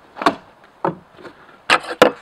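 Hand tools being handled on a melamine-covered plywood tabletop: four short hard knocks and clatters, the loudest pair near the end as a steel try square is picked up off the board.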